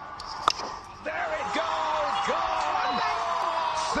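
A cricket bat strikes the ball once, a sharp crack about half a second in. From about a second in, men's voices shout and cheer as the shot goes for six.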